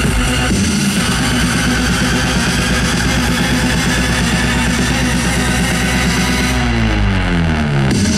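Electronic dance music from a live DJ set, played loud over a festival sound system, with a falling pitch sweep near the end.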